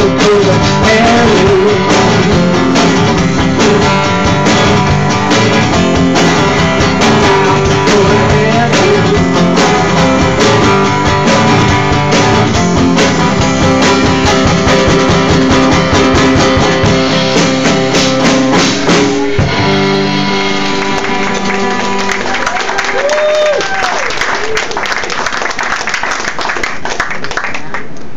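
Live acoustic guitar and drum kit playing an instrumental stretch of a blues-country song. About two-thirds of the way through, the guitar drops back and the drums and cymbals carry on nearly alone.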